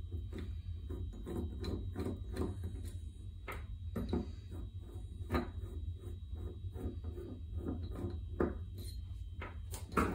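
Irregular small clicks and knocks of a screwdriver working the screws of a metal diaphragm fuel pump, and of the pump body handled on a wooden workbench, over a steady low hum.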